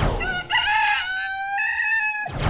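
Rooster crowing: one long cock-a-doodle-doo that climbs and holds its pitch, opened by a short whoosh.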